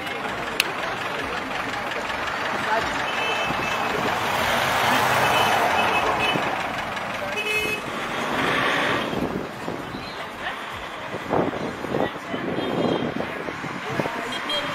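Road traffic passing close by: one vehicle swells loud a few seconds in, a short high horn toot sounds about halfway, and people talk over it.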